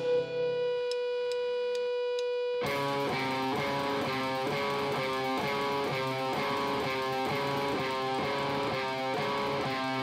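Electric guitars played live by a rock band: one guitar holds a single ringing note under four light, evenly spaced ticks, then about three seconds in an electric guitar riff starts, a short figure of picked notes repeating steadily.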